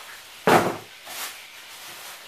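A single short thud about half a second in, then a softer rustle, as items are picked up and handled.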